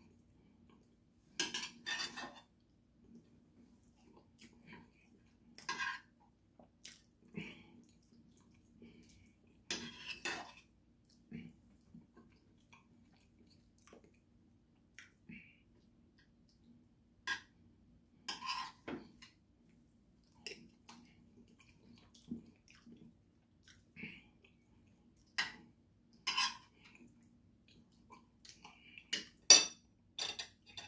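Metal spoon and fork clinking and scraping against a ceramic plate while eating fish, in irregular short clinks a second or a few apart, the loudest near the end. A faint steady low hum runs underneath.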